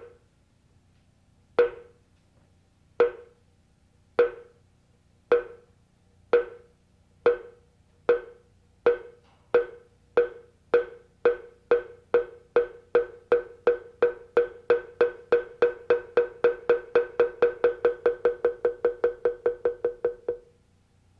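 A single pitched percussion instrument struck over and over, every stroke at the same pitch. It starts with slow single strokes about one and a half seconds apart and speeds up steadily into a fast roll of about four strokes a second.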